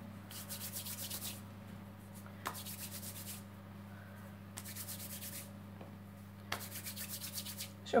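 Fingers rolling small pieces of potato dough into nudli on a floured wooden pastry board: a dry rubbing hiss in four strokes of about a second each, roughly two seconds apart, over a steady low hum.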